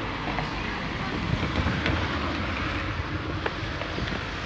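Steady low rumble of wind buffeting a phone microphone outdoors, with a few faint clicks.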